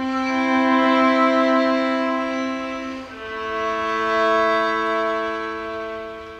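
Violin and viola playing long sustained bowed notes together as a held chord. The harmony moves to a new held chord about three seconds in, and that chord swells slightly before easing off.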